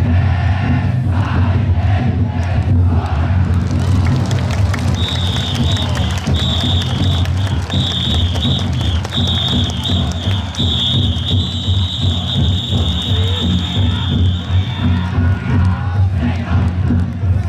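Taiko drums inside the Niihama taikodai festival floats beating a rapid, steady rhythm under a cheering, shouting crowd. A shrill whistle starts about five seconds in and is held, broken a few times, until near the end.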